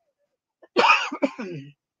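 A woman clears her throat once, a short rough burst starting about three-quarters of a second in.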